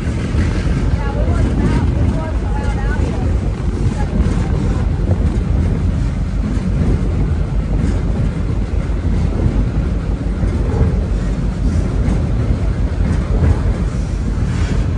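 Passenger train rolling along the track, a steady low rumble heard from an open-air car.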